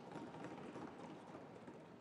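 Faint scattered knocking of members thumping their desks in a large chamber, trailing off near the end.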